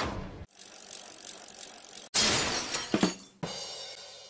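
Title-card sound effects: a loud sweeping whoosh dies away in the first half second, then about two seconds in a sudden crash like breaking glass. A second hit near the end rings and fades out.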